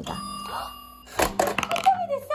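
Toy toaster's timer bell ringing for about a second, then the spring-loaded toy bread popping up with a short clatter of plastic knocks: the timer has run out.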